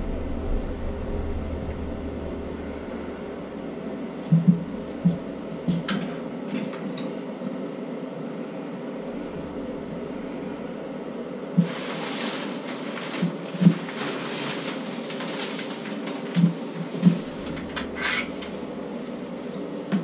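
A few low knocks, then about twelve seconds in a sudden rushing hiss as water and air are forced out through a blow tube on a newly installed tub-and-shower valve, flushing debris from the supply lines. The rush lasts about six seconds, with knocks in it.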